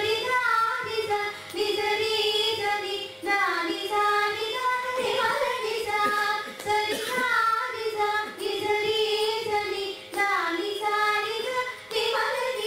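Two women's voices singing a Carnatic ragamalika together, with long, ornamented, gliding phrases broken by short breaths, over a faint steady drone.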